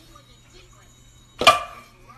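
A single sharp knock about a second and a half in, a plastic cup set down hard on a tabletop, with a brief ringing after it over a faint low hum.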